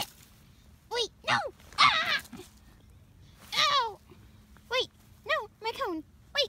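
A person's voice making a series of short cries that fall in pitch, wordless sound effects for a plush puppet fight.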